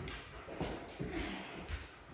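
Footsteps of a person and a German Shepherd's claws tapping on a hard floor while walking on leash, a string of irregular light taps and shuffles.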